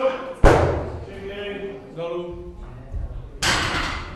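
A loaded Olympic barbell with bumper plates, 28 kg, is dropped onto the lifting platform about half a second in. It lands with one heavy thud and a brief ring.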